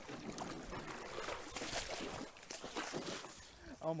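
A person wading quickly through a shallow stream: irregular splashing steps in the moving water. A man's voice starts right at the end.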